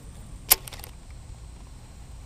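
A fishing rod swished through a cast: one quick, sharp whoosh about half a second in, followed by a few faint ticks of line running out.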